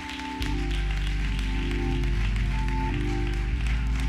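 Instrumental music of held chords over a low bass that comes in about half a second in, with people clapping.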